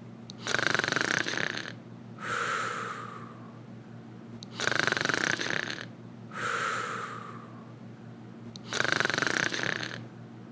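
A man snoring in a slow, even rhythm: three rattling in-breaths about four seconds apart, each followed by a softer breath out.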